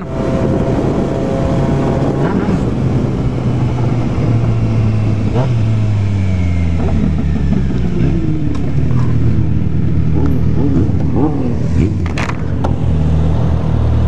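Motorcycle engine running under way at steady revs, its note dropping about five seconds in as the bike slows, with wind rushing over the microphone.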